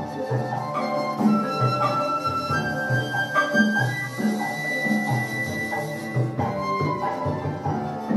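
Live band music: a flute plays long held notes that climb in three steps, over a marimba and hand drums keeping a steady repeating beat.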